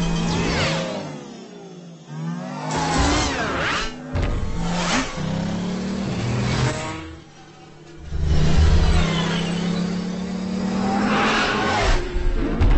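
Sci-fi light cycle engine effects: electronic engine whines that glide up and down in pitch as the cycles rev and sweep past, with whooshing pass-bys. The sound drops away briefly about a second in and again around seven seconds, then comes back loud.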